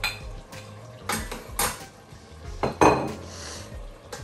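A metal spoon clinking against a bowl and a stainless steel saucepan as food is scraped into the pot and stirred: a run of sharp, irregular clinks, the loudest about three quarters of the way through.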